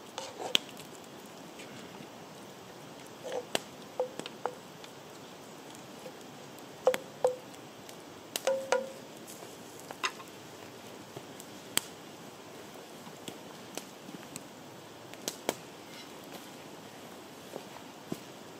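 Wood campfire crackling under a cast iron Dutch oven: scattered sharp pops over a faint steady hiss. Several pops in the first half come with a brief metallic ring.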